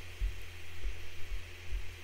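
Steady low electrical hum in the recording, with a few soft low thumps spread through it.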